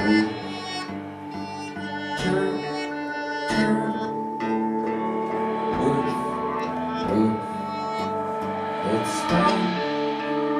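Live anti-folk rock band playing: strummed acoustic guitar and drums over held notes, with strong strikes about every one and a half to two seconds.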